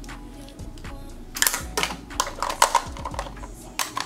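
A quick run of sharp clicks and clatter, like small objects being picked up and handled close to the microphone, starting about a second and a half in, over faint background music.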